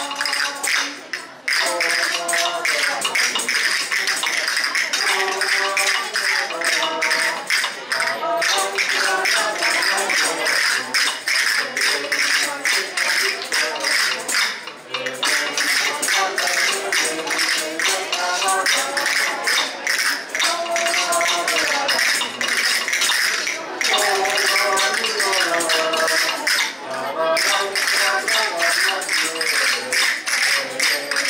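A group of voices singing a Spanish Christmas carol (villancico) to a steady, fast beat of tambourines, with brief pauses between verses.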